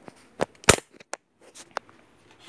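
A handful of sharp clicks and knocks, the loudest a little under a second in: handling noise as the phone camera is picked up and moved.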